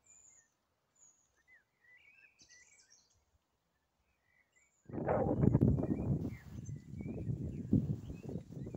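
Faint birdsong, a few short scattered chirps. About five seconds in, loud gusting wind buffets the microphone and drowns them out.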